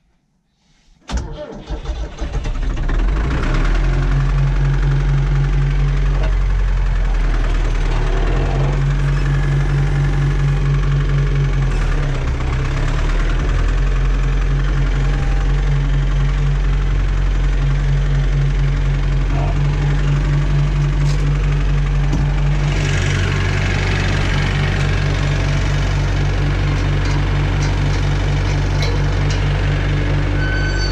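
An old tractor's diesel engine, heard from inside the cab, starts about a second in and then runs steadily and loudly.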